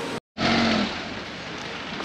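A brief dropout, then a car passing close by: engine and tyre noise loudest at first and fading away over about a second.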